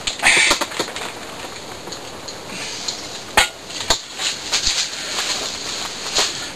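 Handling noise of a PVC pipe-cement can being worked at while its lid sticks: small clicks and clinks, a short rustle near the start, and two sharper knocks about three and a half and four seconds in.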